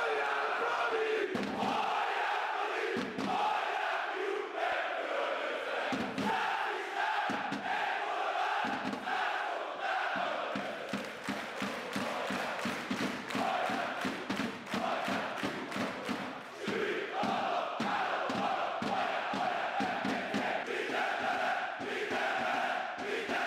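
Large crowd of football supporters chanting in unison. About nine seconds in, a steady rhythmic beat of hand claps joins the chant.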